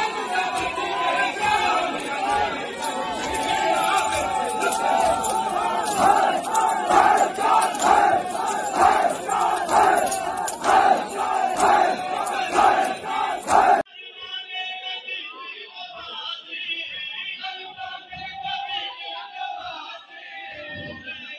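A large crowd of mourners chanting loudly in unison. From about six seconds in, a regular beat of chest-beating (matam) runs under the chant, about two strokes a second. About fourteen seconds in, the sound cuts abruptly to a quieter, duller recording of crowd voices.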